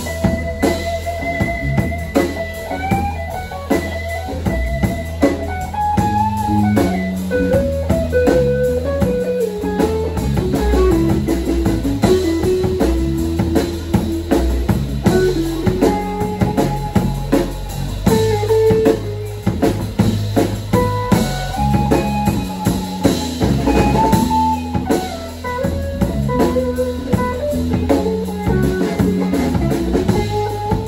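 Live electric rock band playing an instrumental passage: an electric guitar plays a lead melody of sustained, bending notes over electric bass guitar and a drum kit keeping a steady beat.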